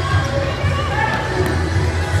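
Voices of a crowd talking and calling out, with repeated low thuds underneath.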